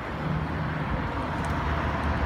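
Small hatchback car driving slowly past, its engine running with a steady low hum.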